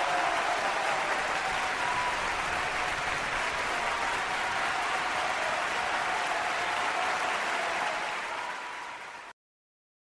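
Crowd applause with faint cheering, fading out near the end and then cutting off abruptly.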